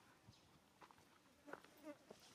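Near silence: faint outdoor ambience with a few soft ticks and rustles, and a brief faint squeak near the end.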